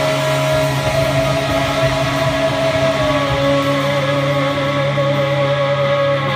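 A rock band's electric guitars and bass holding the song's final chord as it rings out, one high note wavering slightly above a steady low drone, with no drumbeat.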